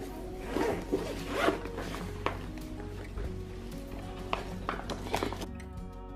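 Zipper on a fabric lunchbox-style oven carry bag being pulled open around its edge in several short pulls, over faint background music.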